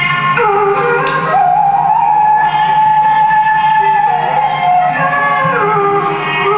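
Devotional bhajan music: a melody of long held notes that slide from one pitch to the next, over a steady low drone.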